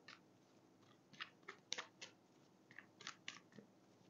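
Faint, irregular clicks and snaps of a deck of tarot cards being shuffled by hand, about ten in four seconds, bunched in the middle.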